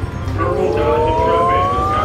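Slot machine win sound effect: an electronic tone with several parallel pitches gliding steadily upward, starting about half a second in and running just past the end, while the big-win meter counts up. Machine music plays underneath.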